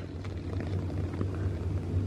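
Steady low hum of the electric blower fans that keep the inflatables up, with a faint even hiss over it.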